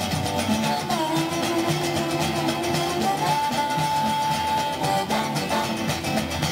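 Live acoustic blues: a harmonica playing a train imitation with long held notes, one bending about a second in, over strummed acoustic guitar, mandolin and a hand drum keeping a steady rhythm.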